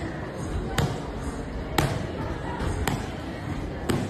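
Muay Thai kicks landing on handheld Thai pads: four sharp smacks, about one a second.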